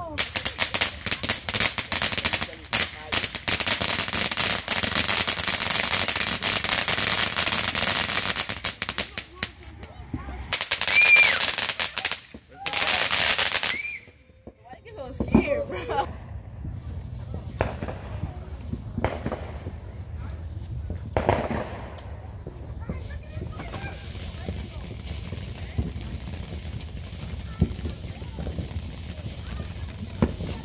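Consumer fireworks crackling in a rapid string of pops for about ten seconds, then two shorter bursts of crackling. Scattered single bangs follow, and near the end a fountain firework hisses more quietly as it sprays sparks.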